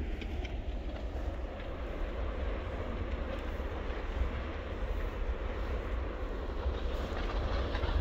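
Steady, unbroken rumbling roar of the Litli Hrútur fissure eruption's lava fountain at the crater, heavy in the low end.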